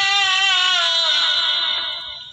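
A singing voice holding one long note in a song, wavering slightly in pitch, then sliding down and fading away near the end.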